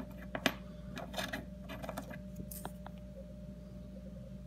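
Lincoln pennies clicking against each other and a wooden tabletop as they are picked up and shifted by hand: a handful of light clicks, the sharpest about half a second in, thinning out after the first few seconds.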